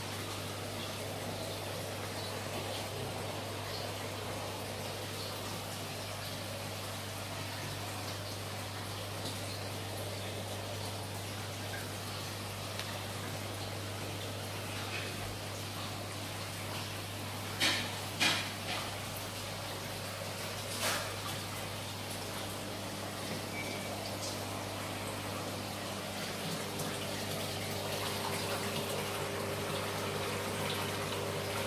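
Saltwater aquarium's water circulation running steadily, a constant rush of moving water over a low hum from the pump. A few sharp knocks come about two thirds of the way through.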